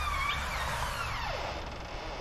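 Hinges of a front door creaking as the door swings open: a drawn-out creak that slides down in pitch over about a second and a half.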